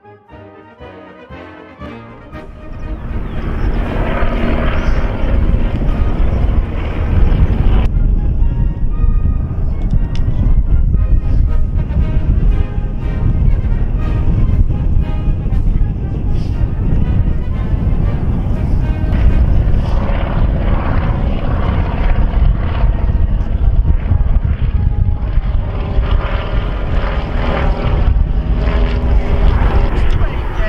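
Propeller aircraft flying overhead: its engine drone comes in about two seconds in and stays loud and steady.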